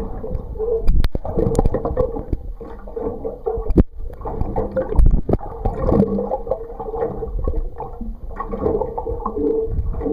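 Muffled gurgling and sloshing of water around a submerged camera, with a faint steady hum. Sharp knocks come a little after a second in, near four seconds and about five seconds in.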